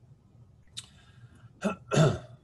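A man clearing his throat: two short, sharp bursts near the end, the second louder and longer.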